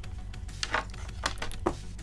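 Quiet background music, with a few light clicks and rustles near the middle as a carded action figure's plastic blister pack is handled and set down.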